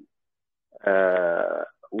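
A man's drawn-out hesitation sound, one held "ehh" of just under a second after a short silence.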